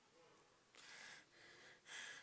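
Mostly near silence, broken by three short, faint breaths into a handheld microphone in the second half.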